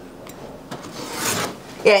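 A knife blade drawn through leather along a steel straightedge: one rasping cut stroke about a second in, lasting about half a second.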